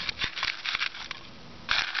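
A plastic cup being pressed down into a hole in wet, gritty, rocky sand: a run of short crunching and scraping sounds, then a brief rustle near the end.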